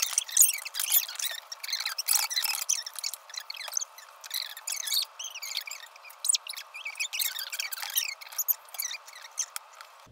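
Sped-up kitchen audio: voices and bowl-and-spoon sounds turned into rapid, high-pitched squeaky chirps and clicks, with no low tones at all.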